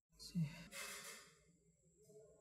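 A person sighing faintly: a brief voiced start, then a breathy exhale of about a second that fades away.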